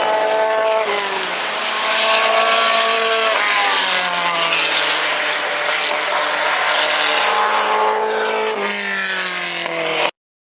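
Engines of historic sports racing cars accelerating along the track, their note climbing in each gear and dropping sharply at gear changes about a second in, about three and a half seconds in and again near the end.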